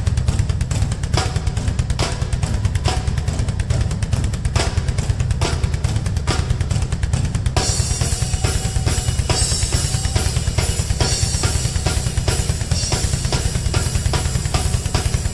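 A Pearl drum kit played live with a dense, continuous bass-drum pulse under repeated snare and tom strikes. About seven and a half seconds in, cymbals come in and keep washing over the beat.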